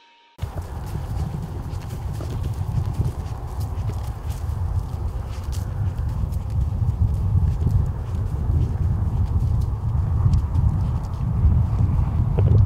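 Footsteps crunching through snow and corn stubble, over a steady low rumble on the camcorder's microphone. The sound cuts in suddenly just after the start.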